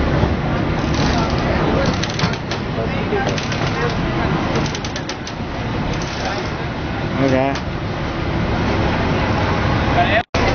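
Vaporetto water-bus engine running at the landing stage, with passengers' chatter and scattered knocks as people step aboard.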